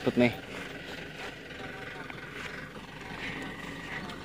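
Loaded truck's engine running steadily at low speed, heard as a quiet, even rumble while it crawls along a narrow field track.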